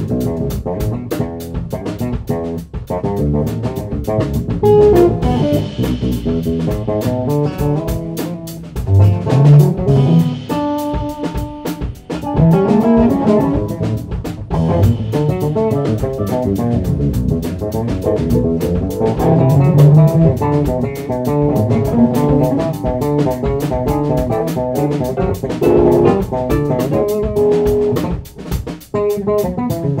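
Instrumental band playing live: electric guitar, bass guitar, drum kit and keyboard, with the drums keeping a steady beat. The playing drops out briefly near the end.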